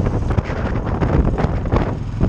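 Wind buffeting the microphone of a moving motorcycle, with the Royal Enfield Classic 500's single-cylinder engine and road noise running underneath.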